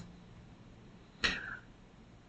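Faint room hiss in a pause of a man's speech, with one short, soft intake of breath about a second in.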